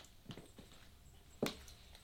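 A few light, sharp metallic clinks as a woman moves in high heels and stockings, one clearly louder about one and a half seconds in. She calls it a "clink-clink".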